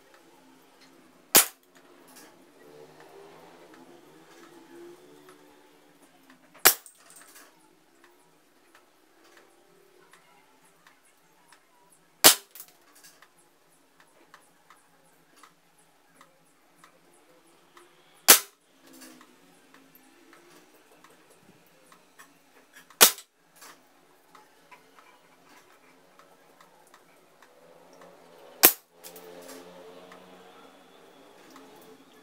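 Six shots from a suppressed PCP Caçadora air pistol firing 4.5 mm pellets, each a single sharp crack, about five to six seconds apart.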